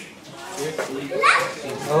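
Voices only: people talking and exclaiming, high-pitched like children's. There is a short rising exclamation partway through and a louder voice near the end.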